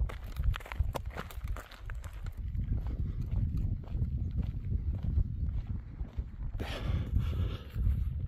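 Footsteps of a person walking at a steady pace on a stony, earthy footpath, over a low rumble of wind on the phone's microphone.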